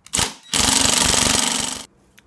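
Ryobi cordless impact driver tightening seat-rail bolts: a brief spin, then about a second and a half of rapid hammering as the bolt seats, stopping suddenly.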